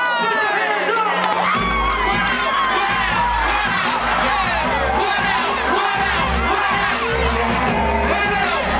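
A large concert crowd screaming and cheering, a dense mass of high-pitched voices rising and falling. A deep steady bass sets in underneath about a second and a half in.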